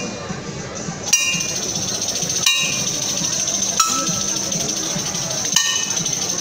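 A metal percussion instrument is struck four times at a slow, even pace, roughly every one and a half seconds. Each strike rings briefly, over a continuous murmur of voices.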